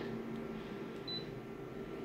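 A copier's touchscreen gives one short, high confirmation beep about a second in as a button is tapped, over a faint steady hum.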